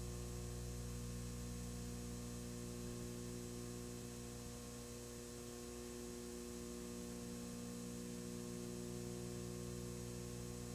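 Steady electrical hum over a faint hiss, unchanging throughout.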